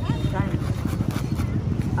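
A motorcycle engine running, a steady low rumble with a quick, even pulse.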